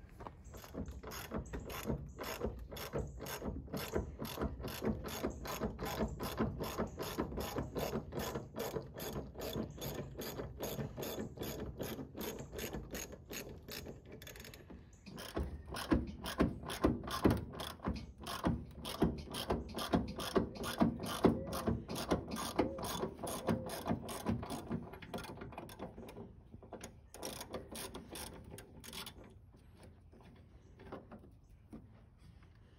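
Socket ratchet wrench clicking steadily, about four clicks a second, as fasteners are backed out to free interior trim in a truck cab. There are two long runs of cranking with a brief pause about halfway; the second run is louder.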